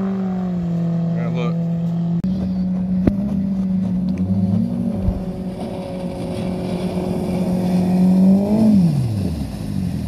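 Outboard jet motors on small aluminum boats running at speed in shallow river water, two engines at once. The nearest boat, a Mercury outboard, gets louder as it comes close, and its engine pitch drops quickly as it passes, near the end.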